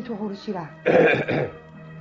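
A person clearing their throat: one short, rough burst in two parts about a second in.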